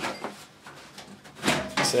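A short knock as a hand takes hold of the metal side panel of a tower PC case, followed by a few faint handling clicks as the panel is gripped to be pulled off.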